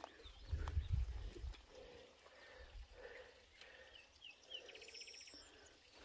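Faint calls of a small bird in the open: a few short rising chirps, then a brief buzzy trill, over low rumbles of wind and handling on the microphone.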